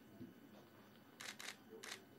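Faint camera shutter clicks over a quiet room: two in quick succession a little past the middle, then one more near the end.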